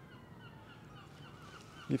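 Faint outdoor background with distant birds calling in short, wavy chirps. A man's voice starts right at the end.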